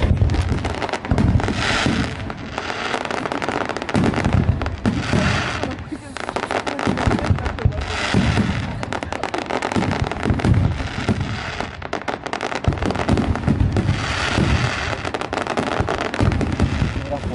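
Fireworks display: a continuous run of booms and dense crackling from bursting shells, the crackle swelling several times.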